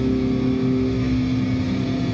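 Distorted electric guitar and bass amplifiers holding a final chord as a metal song ends, a steady drone with one higher note dropping out about a second in.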